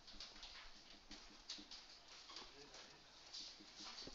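Faint, intermittent strokes and taps of a marker pen writing on a whiteboard, over quiet room tone.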